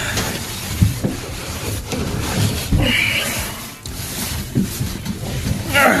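Rustling and scraping handling noise as a man squeezes his body into a cramped fiberglass space, with clothing rubbing on the camera microphone and a few light knocks.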